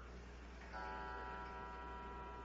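Faint steady low hum, joined about three quarters of a second in by a faint, steady pitched tone with several even overtones.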